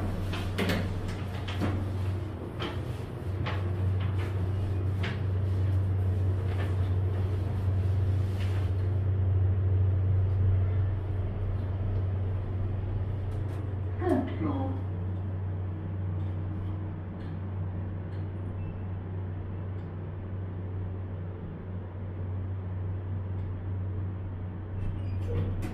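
Otis 2000 H hydraulic lift car running, with a steady low hum throughout and several clicks and knocks in the first nine seconds. A brief squeak-like sound comes about 14 seconds in.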